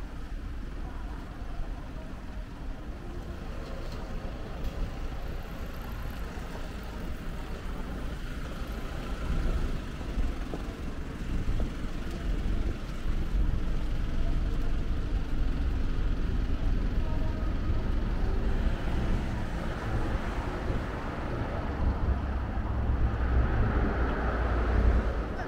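Road traffic passing alongside the sidewalk: a steady, low rumble of cars and trucks that grows louder in the second half.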